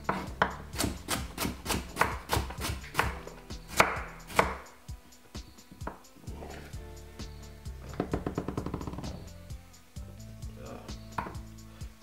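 Kitchen knife chopping carrot on a wooden chopping board: quick, steady cuts, about three a second, for the first four seconds or so, then fewer, quieter cuts with a short fast run later on.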